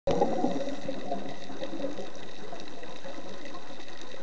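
Underwater sound picked up by a camera in a dive housing: a steady wash of sea noise, with the bubbling of a scuba diver's exhaled breath trailing off over the first two seconds.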